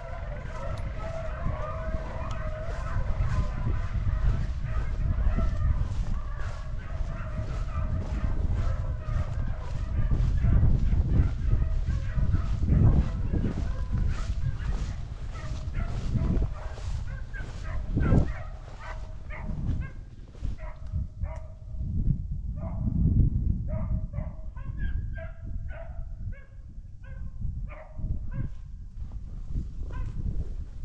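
A pack of beagles baying as they run a rabbit, many voices overlapping in a continuous chorus that breaks up after about twenty seconds into separate, spaced bawls from fewer dogs.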